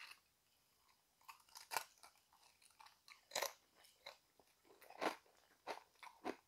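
Faint, irregular crunching of a tortilla chip being chewed with a mouthful of guacamole: a string of short, sharp crunches, the loudest a little past three seconds and at about five seconds.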